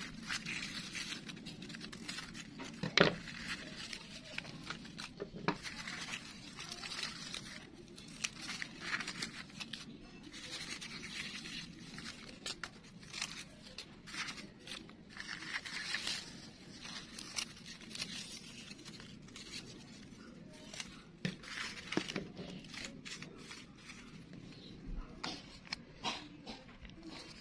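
Scissors snipping through newspaper, with the rustle and crinkle of the paper strips being handled. The snips and rustles come irregularly, with a sharper snip about three seconds in.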